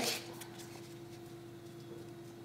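Faint rustle of Pokémon trading cards being slid and shifted in the hand, over a steady low hum.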